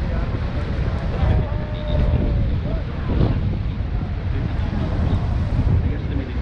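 Wind buffeting the microphone on a tour boat's open deck, over the steady rush of a huge waterfall and the boat's running noise, with faint passenger voices in the background.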